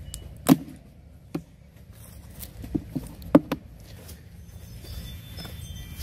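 Hollow knocks and bumps of a heavy black plastic yard drain catch basin being handled and turned over: a sharp knock about half a second in, then a short cluster of knocks around three seconds in.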